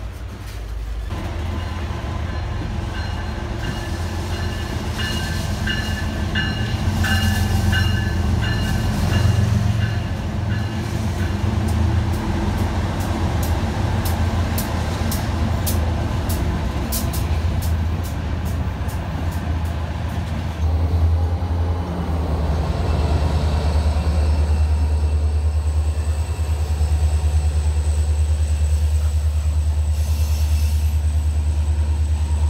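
Freight trains rolling past at close range: the cars rumble along with a squeal of steel wheels about a quarter of the way in and a run of sharp clicks over the rail joints near the middle. Toward the end a diesel locomotive's engine runs steadily as it comes up on the near track.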